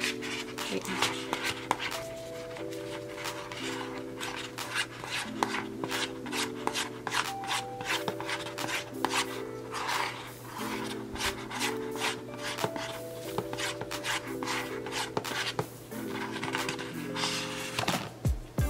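Quick, repeated scraping and rubbing strokes as thick lip gloss is scooped and scraped between containers, over background music of steady sustained chords.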